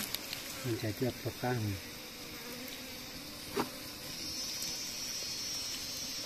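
Insects droning in the forest: a steady high buzz that grows louder about four seconds in.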